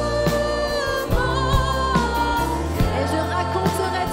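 Live worship band playing a French worship song: several voices singing together over drums and electric bass guitar, with regular drum hits under the sustained sung melody.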